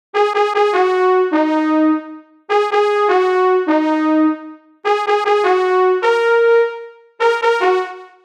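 DSK Brass virtual brass instrument playing a dry melody with no effects on it: four short phrases of a few held notes each, mostly stepping down in pitch, with brief gaps between them.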